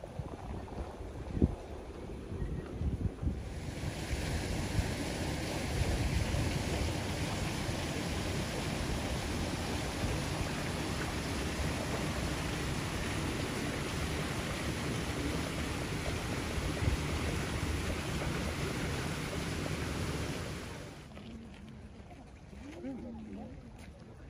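Wind blowing outdoors: a steady rushing noise with low buffeting on the phone's microphone, starting about three seconds in and falling away near the end.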